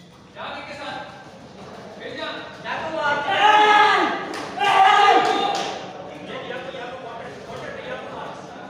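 Men's loud shouts in a large hall during a karate kumite exchange: two long yells, about three and five seconds in, with a few sharp slaps between them.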